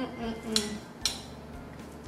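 A metal spoon clinking twice against a glass plate while scooping into a slice of baked corn pudding.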